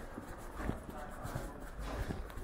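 Footsteps going down stone stairs, about three hard steps a second, in a tiled stairwell, with people talking in the background.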